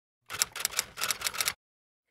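Intro sound effect of about nine quick, sharp clicks in just over a second, like typewriter keys, then it stops.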